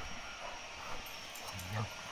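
Faint scuffling of a Rottweiler and a Cane Corso play-fighting on grass, with a short low sound near the end.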